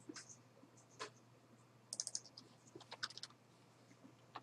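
Faint typing on a computer keyboard: a couple of single keystrokes, then quick runs of keys about two and three seconds in, as a number is deleted and retyped.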